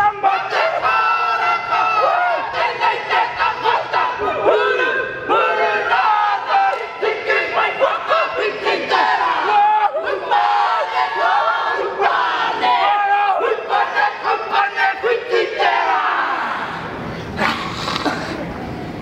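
Māori kapa haka group of men and women chanting a haka in unison, loud rhythmic shouted chant. Near the end the chant stops and crowd noise follows.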